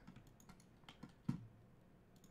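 A few faint, scattered clicks from a computer keyboard and mouse as Maya commands are entered.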